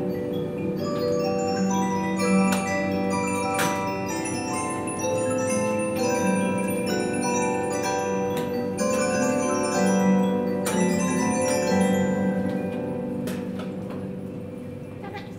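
Large antique disc music box playing a tune: its big punched metal disc turning and plucking the steel comb, giving many ringing notes over sustained low bass notes. The playing eases off slightly near the end.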